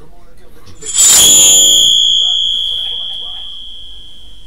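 A sudden loud high ringing sound from the television's speaker, starting about a second in and fading away over the next few seconds.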